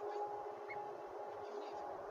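Steady background hiss with a faint, even hum running under it, with no distinct calls or knocks.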